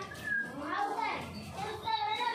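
Children's voices talking and calling, high-pitched and continuous.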